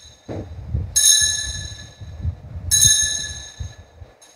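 Altar bell rung twice at the elevation of the consecrated host, the rings about a second and three-quarters apart, each a high, clear ring that fades slowly.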